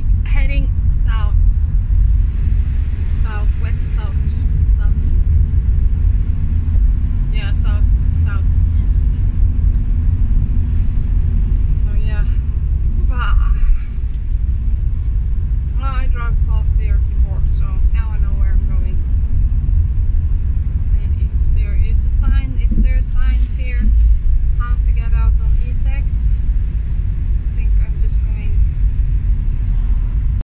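Vehicle driving, heard from inside the cab: a steady low rumble of engine and road noise.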